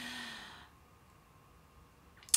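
A woman's soft exhale or sigh between sentences, fading out within the first second, followed by near silence.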